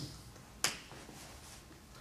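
A single short, sharp click about a third of the way in, against quiet room tone.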